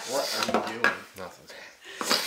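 Hard items, such as glassware or bar tools, clinking and knocking as they are handled, with a few sharp clicks in the first second or so, over low talk.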